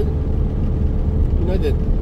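Mercedes-Benz Sprinter 313 van's diesel engine and road noise heard from inside the cab while driving, a steady low rumble.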